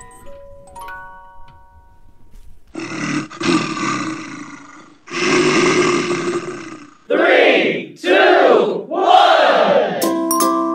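A few faint tinkling notes die away. Then come two long rasping breath-like sounds and three loud roar-like growls, each about a second long.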